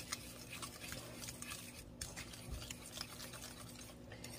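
A fork stirring eggs, sugar and salt in a ceramic mixing bowl by hand, with a steady run of quick light clicks and scrapes as the tines strike and drag along the bowl.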